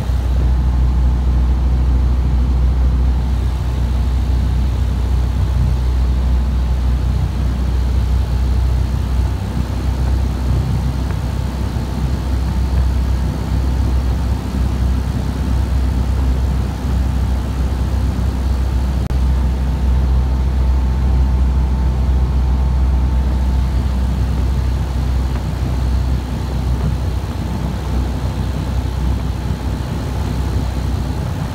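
Cabin noise of a light aircraft in flight with its doors off: a loud, steady engine drone with wind rushing through the open cabin.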